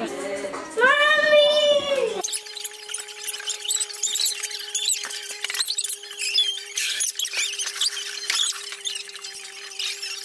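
Background music with a held note that cuts off abruptly about two seconds in. Then comes a steady low hum with many short, high-pitched squeaks scattered over it.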